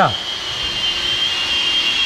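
A steady high-pitched whine over a hiss in the background, unchanging throughout; a man's voice trails off right at the start.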